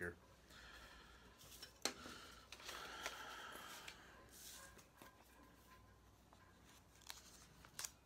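Faint rustling of paper and envelopes being handled on a tabletop, with a sharp tap about two seconds in and another near the end.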